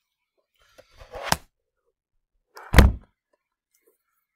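Two knocks about a second and a half apart: a lighter rustling knock ending in a sharp click, then a louder, deeper thud.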